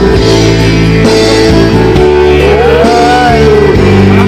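Loud karaoke backing track with guitar playing through the videoke speaker. A man sings into the microphone over it, with a held, bending note a little past the middle.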